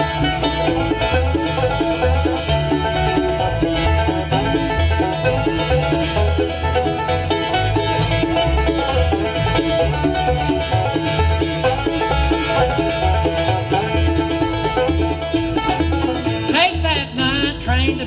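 Live bluegrass band playing an instrumental passage, the five-string banjo picking prominently over guitar and fiddle, with a steady, even bass beat underneath.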